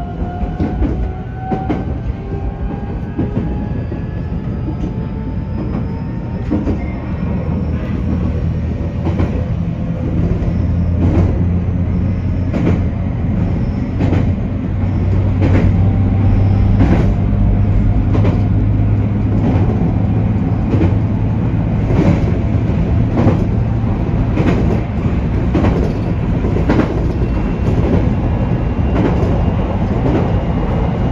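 JR Kyushu 813 series electric train under way, heard from inside the front car: rising motor-whine tones in the first few seconds as it gathers speed, then a steady low running rumble with repeated clicks of the wheels over rail joints.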